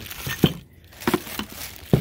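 Three short knocks and light plastic rustling from plastic-bagged espresso machine parts being handled and set down on a table. The first knock is the loudest.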